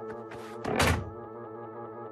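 A single cartoon thunk of a wooden chair being jammed under a door knob, just under a second in, over background music.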